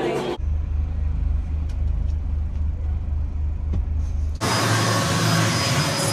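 A low, steady rumble like a vehicle in motion heard from inside, lasting about four seconds and starting and stopping abruptly at cuts. It is framed by chatter before and by loud hissing noise with speech near the end.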